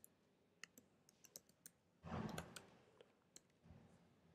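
Faint, irregular keystrokes on a computer keyboard as code is typed, with a louder brief muffled noise about halfway through.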